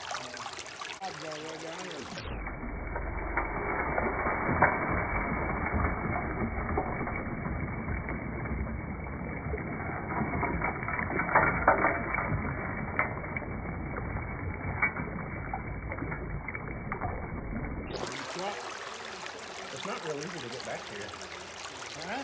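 Creek water rushing steadily through a Robinson double-stack gold sluice, with occasional sharp clicks of gravel and stones knocking along the riffles. For most of the stretch the sound is dull and muffled under a low rumble.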